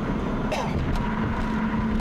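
Steady cabin noise inside a moving Chevrolet car: engine and road noise at driving speed, with a constant low hum.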